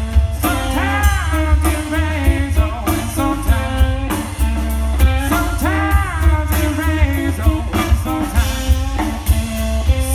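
Live rock band playing through a PA: electric guitars and a drum kit over a strong bass, with a singer's voice carrying the melody.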